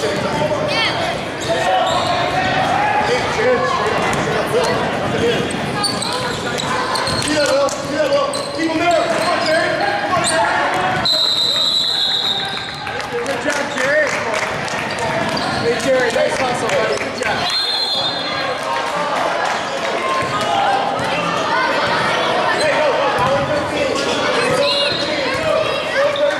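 Echoing gymnasium sound of a youth basketball game: spectators and players talking and calling out, with a basketball bouncing on the hardwood. A referee's whistle sounds a long blast about halfway through and a short one a few seconds later.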